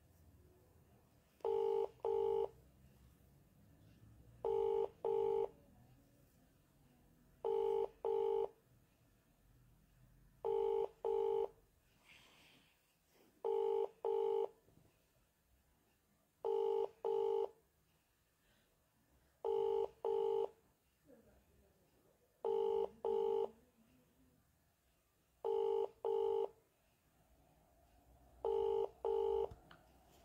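Telephone ringback tone of an outgoing call: a double ring, two short beeps close together, repeating every three seconds. It sounds ten times without the call being answered.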